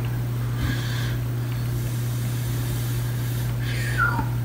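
A steady low hum with a faint hiss above it, unchanging throughout.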